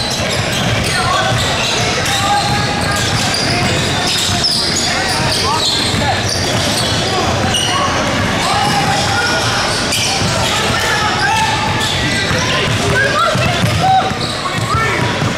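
The din of a basketball game in a large echoing gym: many indistinct voices from players and spectators, a ball being dribbled on the hardwood, and short sneaker squeaks on the floor.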